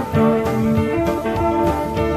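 Live rock band playing: an electric guitar picks a melodic line over bass and steady drums, recorded in concert.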